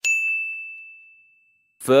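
A single bright ding, a bell-like chime sound effect struck once and ringing out on one clear high note, fading away over about a second and a half.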